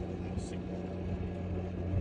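A vehicle engine idling: a steady low hum.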